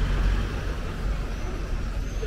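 Delivery van engine running close by, a steady low rumble with street noise over it.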